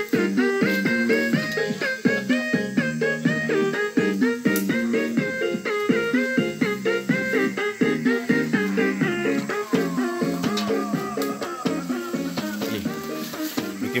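Background music: a melody moving in stepped, held notes over a regular beat.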